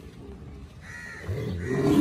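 Cattle lowing: a low, pitched call that grows louder toward the end, with a higher call just before it.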